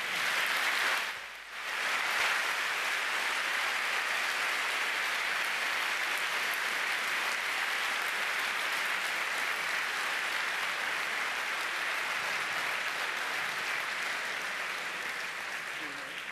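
Large audience applauding steadily, dipping briefly about a second in, then swelling back into sustained clapping that tapers off near the end.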